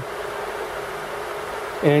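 A steady machine hum with an even hiss, holding level, under a faint buzzing tone; a man's voice comes in near the end.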